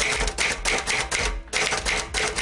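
Typewriter-style typing sound effect: a rapid run of keystroke clicks, several a second, broken by a couple of brief pauses.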